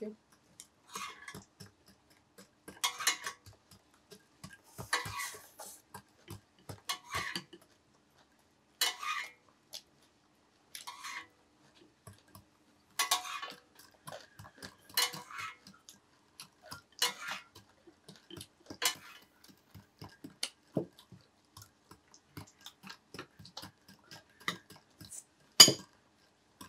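Metal spoon clinking and scraping against dishes and the bulgogi grill pan in short, irregular clatters every second or two, with one sharper clack near the end.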